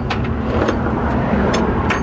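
A vehicle engine idling steadily, with a few light clicks over it.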